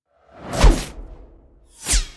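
Two whoosh transition sound effects about a second and a half apart, the first louder, each with a low rumble beneath it.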